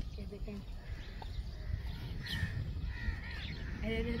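Faint bird calls, a few short calls from about halfway through, over a low steady rumble.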